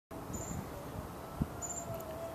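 Faint outdoor background noise with a short high chirp twice, and a brief low thump a little past the middle.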